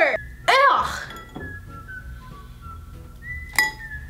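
A brief, loud sliding pitched swoop about half a second in, then faint high whistle-like tones. Near the end a utensil clinks once against a glass mixing bowl.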